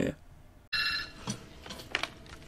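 Telephone ringing: one short electronic ring that starts suddenly just under a second in and lasts about half a second.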